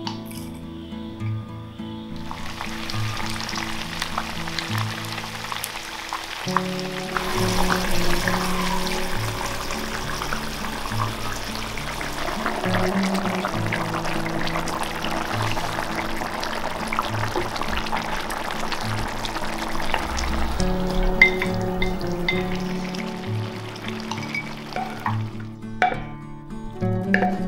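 Fish broth boiling and bubbling in a wok, a dense hiss of liquid that starts a couple of seconds in and grows fuller soon after, under background music with a steady beat.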